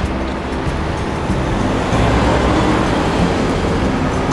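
A car passing close by on a city street: tyre and engine noise that swells about halfway through. Background music with steady low notes runs underneath.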